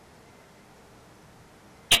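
Faint steady room tone in a pause between a man's sentences. His speech starts again abruptly near the end.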